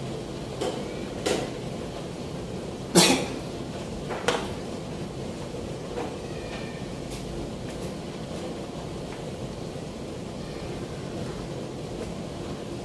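A few short, sharp clicks and knocks of plastic chess pieces being set down and moved on a vinyl board during play, the loudest about three seconds in, over a steady background hum.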